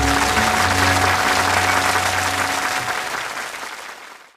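Audience applauding as the band's final chord rings on under it; the chord dies out about three seconds in and the applause fades away near the end.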